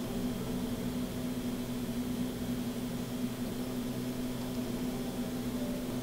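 A steady low machine hum with a faint hiss, even throughout with no clicks or changes.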